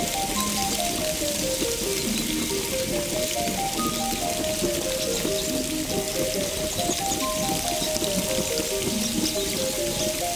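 An ambient relaxation music track: a soft melody of short notes, with a descending run that repeats about every three and a half seconds, over a steady watery hiss of rain-like noise.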